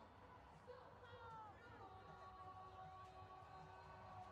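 Faint group singing: voices sliding into long held notes at several pitches at once.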